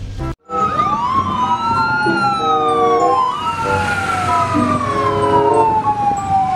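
Fire engine sirens wailing, several overlapping tones rising and falling slowly in pitch, starting after a sudden break half a second in.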